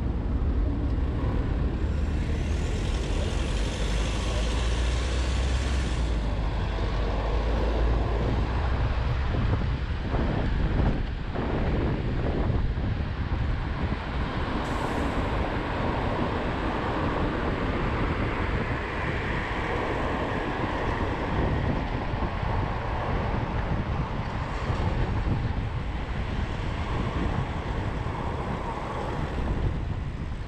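City road traffic heard from a bicycle riding among it: a steady mix of car and bus engines and tyre noise with a low rumble. A hiss rises over it from about two to six seconds in.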